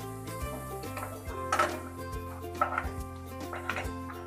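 Background instrumental music over a wooden spatula scraping and knocking in a nonstick frying pan, several short strokes, as fried green peas are scooped out into a bowl.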